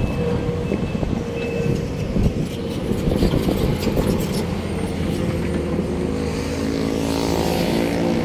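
Sumitomo 490 LCH crawler excavator's diesel engine running close by, a steady drone with a few sharp knocks about halfway through. Near the end the engine note grows clearer and a higher tone glides downward.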